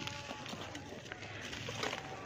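Dried mud-and-sand clumps crumbled and squeezed between bare hands: gritty crunching and trickling grains, with a louder crunch near the end.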